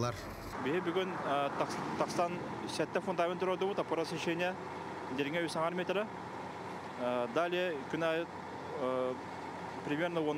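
A person speaking, with a steady truck engine idling in the background.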